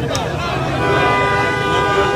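A vehicle horn sounds from about a second in, held steadily for over a second, over the voices of a large shouting crowd.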